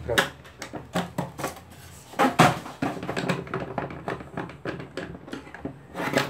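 Plastic enclosure of a WEG direct-on-line motor starter being handled and turned over on a tabletop: a run of irregular knocks, clicks and scrapes.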